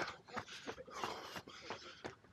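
A runner's footfalls repeating at running pace, with his heavy breathing.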